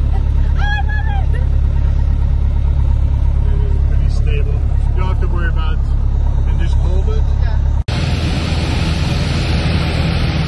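Piper PA-28-160 Cherokee's four-cylinder Lycoming engine and propeller running with a steady deep drone while the plane is on the runway, with brief voices over it. About eight seconds in the sound cuts suddenly to the more even rushing cabin noise of the aircraft in flight.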